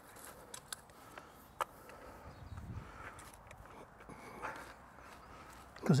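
Faint rustling and scattered light clicks of hand-tool work in soil and weeds, with one sharper click about a second and a half in.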